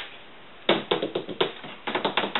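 A quick irregular run of light taps and clicks, several a second, from hands handling something on a tabletop; it starts a little under a second in.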